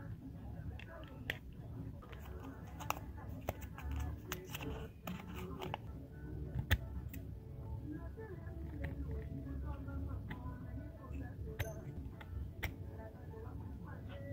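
Sharp clicks and scrapes of small metal blades: a utility-knife blade scraping an LED chip off an aluminium circuit board, and scissors snipping a razor blade, with the loudest snap about seven seconds in. A steady background music bed runs underneath.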